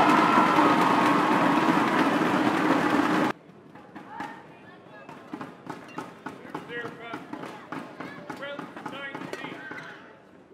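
Badminton arena crowd cheering loudly between points, cut off abruptly about a third of the way in. After that, a rally: sharp racket strikes on the shuttlecock and squeaking court shoes over a quiet crowd murmur.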